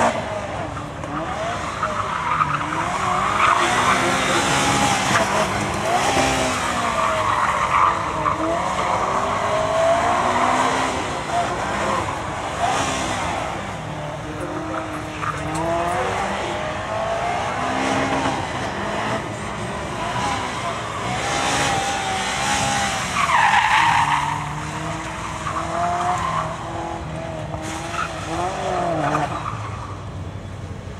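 Subaru Impreza GC8 competition car's flat-four engine revving hard up and down over and over as it is driven flat out through tight turns, with tyres squealing and skidding on tarmac; the loudest squeal comes about 23 seconds in.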